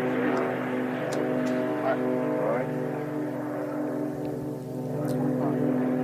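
A steady drone from a propeller aircraft flying overhead, holding an even pitch. Faint voices can be heard underneath.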